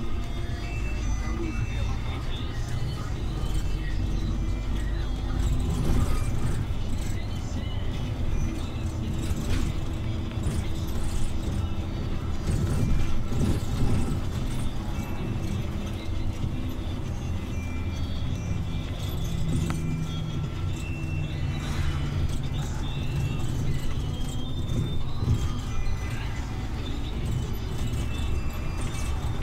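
City bus driving, heard from inside the passenger cabin: steady engine and road rumble, with music and low talking underneath.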